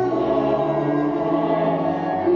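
Choral music: voices holding long sustained chords, with a low note shifting about a second and a half in.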